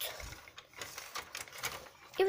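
Irregular light clicks and taps of hard plastic as a hand handles a Littlest Pet Shop toy car.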